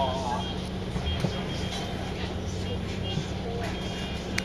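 Volvo Olympian double-decker bus's diesel engine running with a steady low drone, heard from inside the bus, with a short knock just after a second in and a brief voice at the start.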